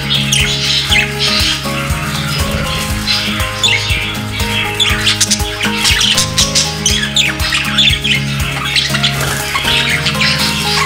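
Budgerigars chattering with many short, quick chirps and squawks, over background music with held notes.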